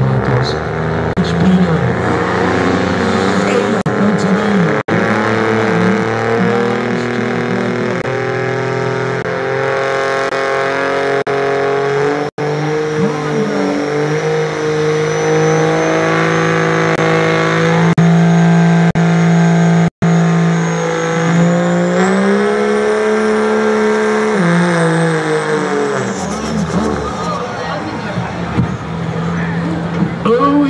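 Diesel Ram pickup at full throttle pulling a weight-transfer sled. The engine holds high revs with a wavering pitch while a thin, high whistle rises slowly over it. Near the end the revs drop as the driver lets off.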